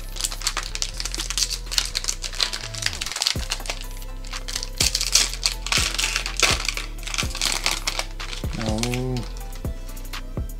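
A foil trading-card booster pack wrapper crinkling and tearing open in gloved hands, with dense crackling that eases off near the end. Background music with a low bass line plays under it.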